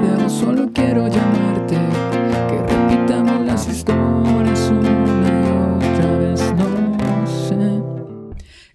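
Nylon-string classical guitar strummed in a steady rhythm, cycling through the F, C, Dm7 and B-flat chords of the song played without a capo. The strumming stops near the end.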